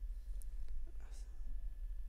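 Steady low electrical hum on the microphone, with a few faint computer-keyboard keystroke clicks and a soft breath.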